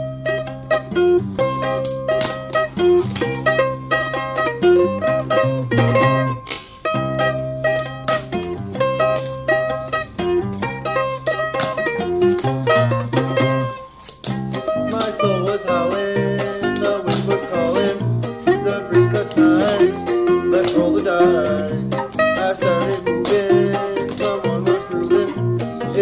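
Background music: a song with plucked string instruments. It drops out briefly about halfway through, then comes back fuller.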